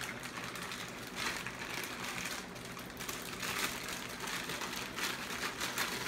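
Plastic bags crinkling and rustling with irregular crackles as frozen reptile-food links are handled and tipped from their original bag into a zip-top sandwich bag.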